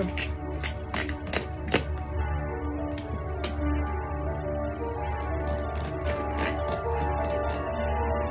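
Background music with long held notes. Over it, a run of short, sharp clicks comes from hand work at a basket being cut free of its wrapping.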